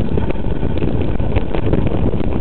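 Wind buffeting the microphone of a bike-mounted camera as a mountain bike rides a rough forest trail, with scattered rattling knocks from the bike and mount over the bumps.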